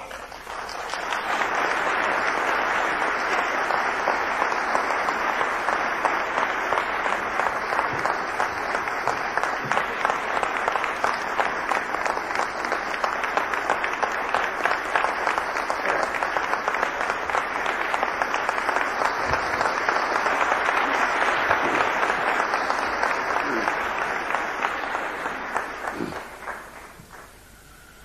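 Audience applauding steadily for about 25 seconds, starting about a second in and fading out near the end.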